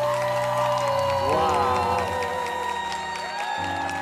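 A woman singing a slow ballad, holding long high notes over an orchestral backing.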